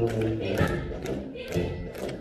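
Marching brass band playing, trombones and sousaphones holding chords over a steady beat of drum strikes about two per second.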